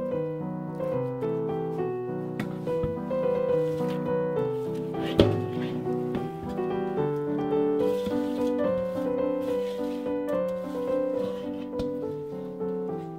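Background piano music with a steady run of notes, and one sharp knock about five seconds in.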